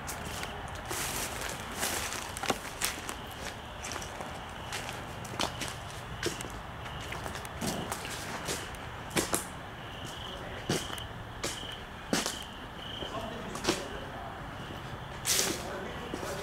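Footsteps of a person walking at night through dry brush and onto concrete, making irregular crunches and scuffs, about one every second or so.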